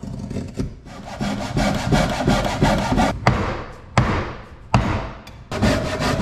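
Japanese ryoba pull saw cutting across the end grain of a wooden slab in quick repeated strokes, with a few sharp knocks between about three and five seconds in.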